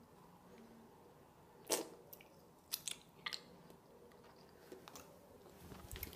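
Faint close-up chewing of a jelly bean, with a few sharp mouth clicks, the loudest about two seconds in.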